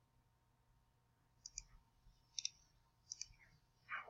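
Three faint computer mouse clicks about a second apart, each a quick double tick, over near silence.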